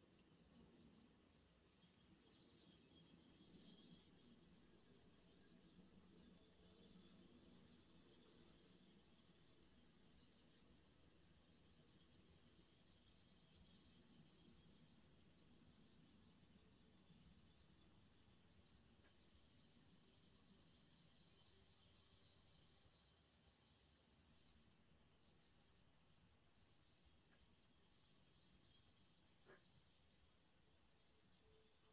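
Near silence: faint steady high-pitched hiss of the call audio.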